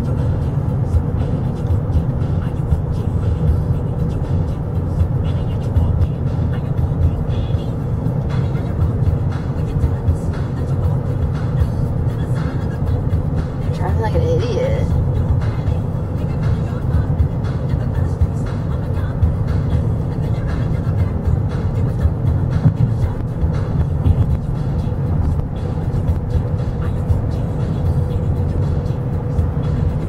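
Steady road and engine rumble inside a moving car's cabin, with music playing in the background.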